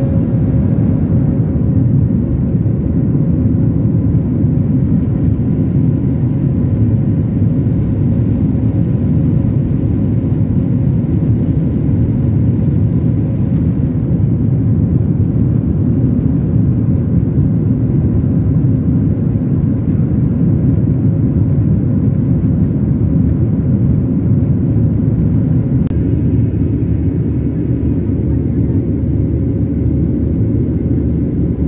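Steady cabin noise of a jetliner in its climb after takeoff, heard from a window seat over the wing: an even, deep rush of engines and airflow with a faint steady hum running through it.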